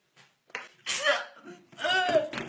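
A boy's vocal reaction just after taking a shot of a drink: a harsh, breathy burst about a second in, then a short voiced cry near the end.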